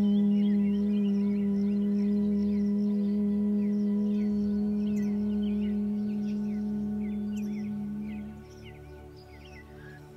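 A woman's steady hum on one low pitch, held for about eight seconds on a single exhale in Bhramari (bee breath) pranayama, the bee-like buzz the practice is named for, then fading out.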